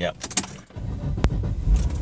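A car's low engine rumble starts abruptly about a second in and keeps on steadily, with a sharp click just after it starts. Brief rattles and clicks come before it.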